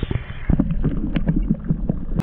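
Muffled underwater sound from a submerged camera: low rumbling water movement with many short, soft knocks and clicks, the high end cut off by the water.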